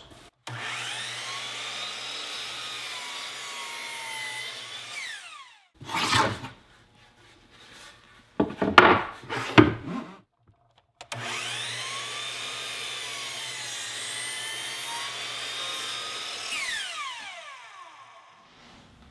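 Hitachi miter saw cutting Baltic birch plywood twice. Each time the motor runs steadily for about five seconds, then its pitch falls as the blade winds down. Between the two cuts come a few knocks and clatter as the board is handled.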